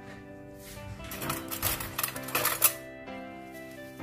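A metal fork clinking and scraping against a glass bowl of melted chocolate in a run of sharp clicks from about one second in until nearly three seconds, the sharpest clink near the end. Background music plays throughout.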